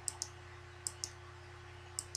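Sharp clicks from the controls of a computer being operated: two quick clicks at the start, two more just under a second in, and another at the end. A steady low electrical hum runs underneath.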